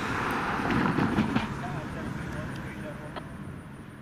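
A car driving past, its noise swelling to a peak about a second in and then fading away steadily.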